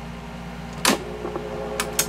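Vintage Ansafone KH-85 answering machine starting to play its outgoing-message tape. A sharp mechanical click comes a little under a second in, then a faint steady tone joins the constant electrical hum, with two more short clicks near the end.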